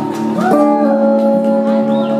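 Solo acoustic guitar playing, chords ringing and sustaining, with a new chord struck about half a second in.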